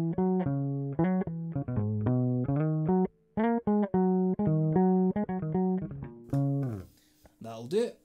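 Fender Jazz Bass with old Rotosound flatwound strings played clean through the bridge pickup alone, no effects: a fingerstyle riff of short plucked notes, with a brief break about three seconds in. The playing stops about a second before the end.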